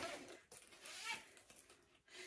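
Faint rustling of a fabric purse strap being pulled and adjusted against clothing.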